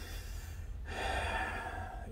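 A man's breath, a soft hiss starting about halfway through and lasting about a second, over a steady low hum of room noise.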